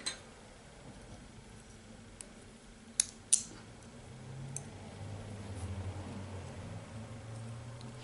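Two sharp small clicks about a third of a second apart, a few seconds in, as a clip is fastened onto the fabric lining, with a few fainter ticks of handling around them. A faint low hum runs through the second half.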